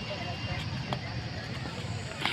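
Distant voices over a steady low rumble of open-air noise, with one sharp click a little under a second in.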